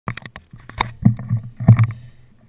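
Handling noise on a handlebar-mounted GoPro: a few quick clicks against the camera housing, then two heavy low knocks, about a second in and near the end, the second being the loudest.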